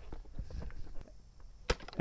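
Faint rubbing of a microfiber chenille mop head wiping the side of a motorhome, with a single sharp click near the end.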